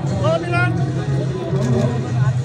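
Voices of people talking outdoors over a steady low rumble, with one voice rising in pitch about half a second in.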